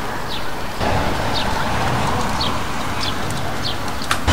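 A small bird chirping repeatedly, short falling chirps about once a second, over steady city street noise that swells with a low rumble about a second in.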